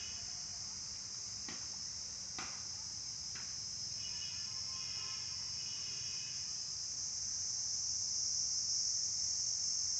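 Steady high-pitched outdoor insect chorus, with a few faint clicks in the first few seconds; it grows a little louder near the end.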